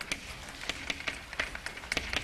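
Chalk writing on a blackboard: a run of short, irregular taps and scratches as the chalk strikes and drags across the slate.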